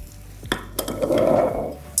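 Glass boiling tubes clinking about half a second in, then a soft rush of liquid lasting about a second as sucrose solution is dispensed into a tube.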